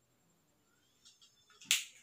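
Mostly quiet room tone, then a single sharp click near the end.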